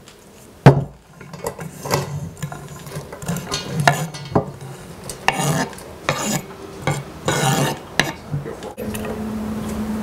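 Sliced red cabbage sliding off a wooden cutting board into an empty stainless steel pot: a sharp knock about a second in, then irregular clatter and rustling of the slices against the metal, and a metal utensil scraping in the pot near the end.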